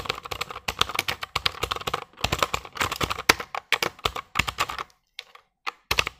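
Fast typing on a Rexus Legionare MX 3.2 mechanical keyboard with clicky blue switches: a dense run of key clicks. It breaks off briefly about five seconds in, then a few more strokes follow.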